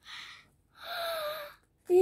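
A young girl's voice: a short breathy gasp, then a drawn-out, slightly falling vocal sound, with louder speech starting near the end.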